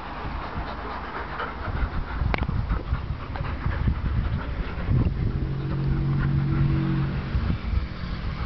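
German Shepherd dog panting close by while being stroked, with rubbing and handling noise on the microphone. A low steady drone joins in for a couple of seconds past the middle.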